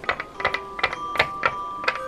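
Plastic Littlest Pet Shop figure walked along a wooden tabletop by hand, its feet tapping the wood in quick uneven steps, about two to three taps a second, over soft background music with held bell-like tones.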